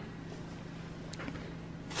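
Quiet room with a faint steady hum and one short click about a second in: the power button of a Nutribullet blender being pressed. The blender motor is not yet running.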